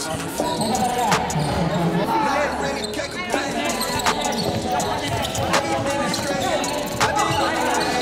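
Basketball game sounds on a hardwood gym court: a ball bouncing in irregular thuds and sneakers squeaking in short gliding squeals, with voices and some music underneath.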